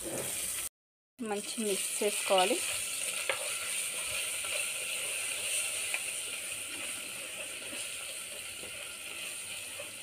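Onion, green chilli and curry-leaf masala sizzling steadily in hot oil in a pan while a spatula stirs it.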